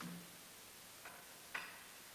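Three faint clinks and taps of altar vessels being handled and set down on the altar, the loudest, with a short ring, about one and a half seconds in.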